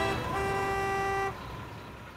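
A car horn sounding one held honk that cuts off about a second and a quarter in.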